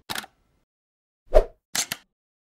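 Sound effects of an animated logo intro: a brief hiss at the start, a loud pop about one and a half seconds in, then two quick ticks near the end.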